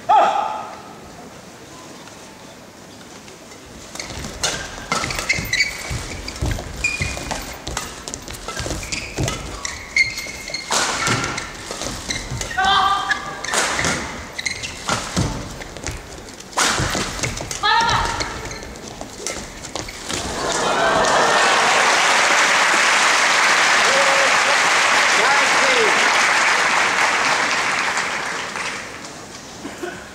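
Badminton doubles rally: a series of sharp racket strikes on the shuttlecock with brief squeaks and shouts. About twenty seconds in the rally is over and the crowd applauds and cheers loudly for about eight seconds.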